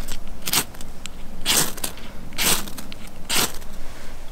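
A ferro rod (firesteel) struck repeatedly with a steel scraper to throw sparks onto tinder: about five sharp rasping scrapes, roughly a second apart.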